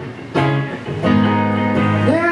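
Live band playing an instrumental passage: electric guitar chords over keyboard, with new chords struck about a third of a second in and again about a second in, then held.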